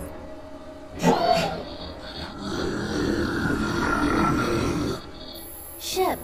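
Animated TV episode soundtrack: music and sound effects, with a sharp hit about a second in and a denser, louder passage in the middle that cuts off abruptly about five seconds in.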